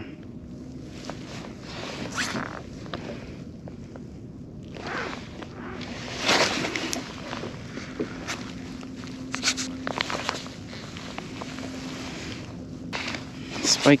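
Several short rasping scrapes and rustles of handling noise from a fishing rod, reel and dry-suit fabric, the strongest about six seconds in, over a faint steady hum.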